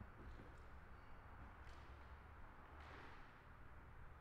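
Near silence: a low steady rumble of room tone, with a few faint, brief soft noises.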